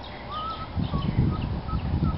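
Birds calling: a string of short chirping notes, over a low rumble.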